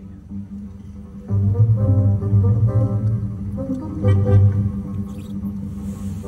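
Live orchestra playing. About a second in it swells, with a strong deep bass line under higher notes.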